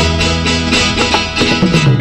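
Instrumental interlude of a 1960s Tamil film song, with an orchestra led by plucked strings and no singing, between sung lines.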